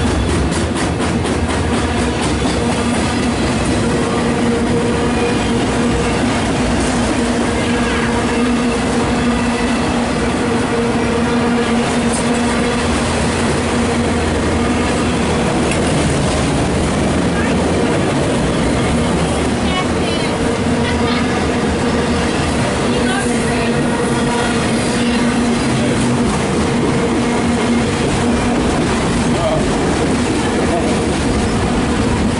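Loaded autorack freight cars of a CSX train rolling past at close range: a loud, steady rumble and clatter of steel wheels on the rails, with a pitched hum that fades out and back in.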